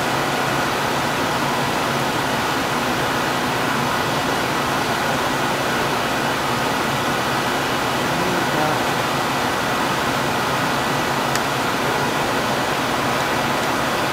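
Steady rushing room air-handling noise, even throughout, with a faint steady high tone and one soft click about eleven seconds in.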